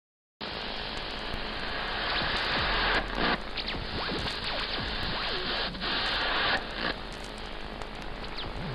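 Loud, steady static hiss that starts just after the opening silence and drops out briefly three times, about three seconds in, near six seconds and shortly before seven. Faint thin gliding tones sound under the hiss.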